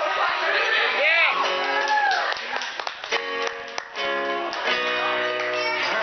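A man singing live to his own strummed acoustic guitar. His voice slides up and down about a second in, then holds several long notes through the second half.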